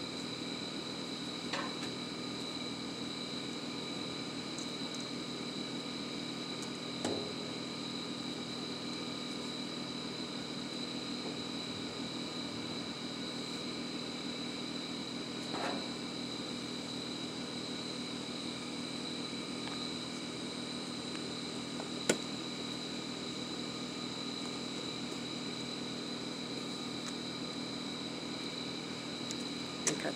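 A steady mechanical hum with a thin high whine runs throughout. Over it come a few faint knocks from rummaging in a metal dumpster, and one sharp click about two-thirds of the way through.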